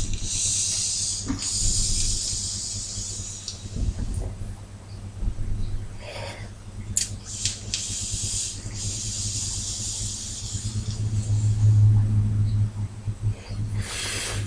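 Two long draws on an e-cigarette's Smoktech DCT triple-punched cartomizer fitted in a Bogue F16 tank, each a steady hiss of air and vapour lasting a few seconds. A long breath out follows near the end.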